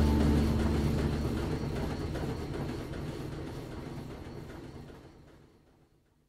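The last chord of a hard rock song ringing out and fading, its sustained low notes and high wash dying away steadily until it cuts to silence about five seconds in.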